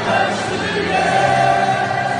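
A large crowd of football supporters singing a chant together in a stadium stand, many voices holding long notes in unison.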